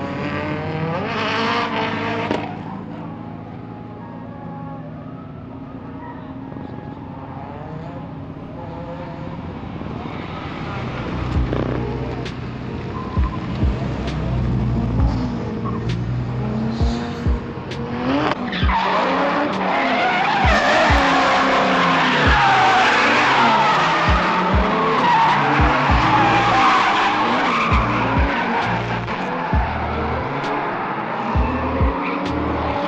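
A drift car's engine revving up and down with tires squealing. About eighteen seconds in, the tire squeal turns into a loud, continuous screech that lasts to the end.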